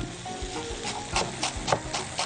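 Chef's knife chopping fresh green herbs on a wooden cutting board: a run of sharp, irregularly spaced knocks of the blade against the board.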